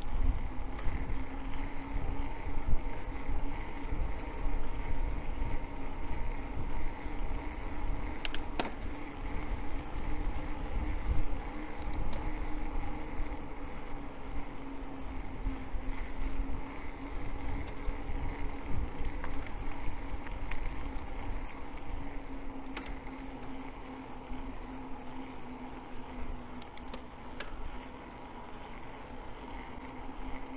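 Electric bike's assist motor whining steadily under load on an uphill climb, its pitch drifting slightly, over low wind rumble on the microphone. A few light clicks and rattles.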